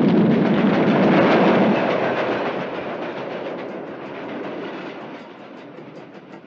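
A large fire burning with a loud rushing noise that fades away steadily after about two seconds.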